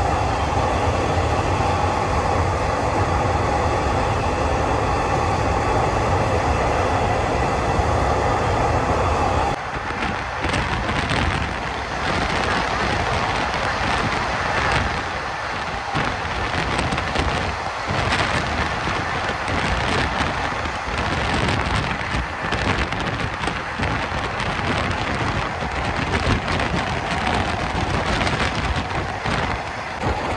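Diesel-hauled passenger train running, heard from an open carriage window. A steady hum with a held tone for the first ten seconds or so changes abruptly to a rougher rushing noise of wheels and air.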